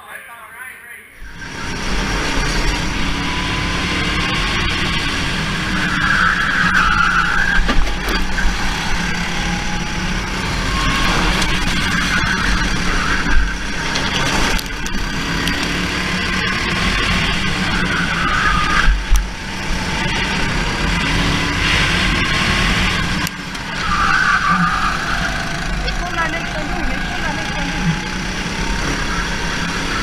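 Go-kart engine heard close up from an onboard camera while racing, its pitch rising and falling as the kart speeds up and slows through the corners.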